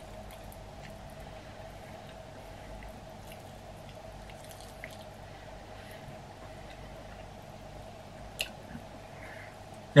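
Faint wet chewing and soft mouth clicks from eating a chicken wing off the bone, with one sharper click a little over eight seconds in, over a steady low hum.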